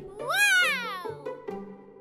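A single drawn-out cry that rises and then falls in pitch, fading out after about a second, over soft sustained background music.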